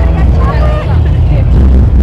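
Loud, bass-heavy amplified music from the show's sound system, with voices over it.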